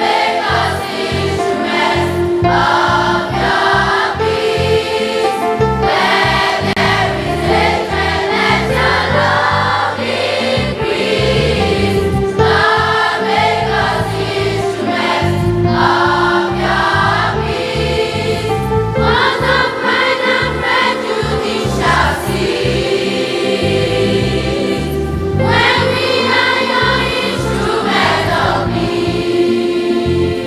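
Children's choir singing a hymn in phrases of a few seconds, backed by electronic keyboards holding sustained chords that carry on between the sung lines.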